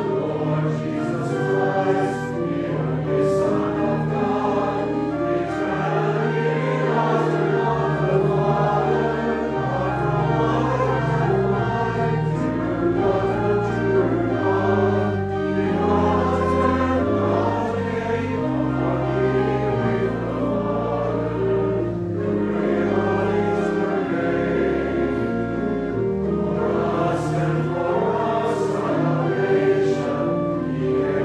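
Church choir singing sacred music, with sustained low organ notes moving stepwise underneath.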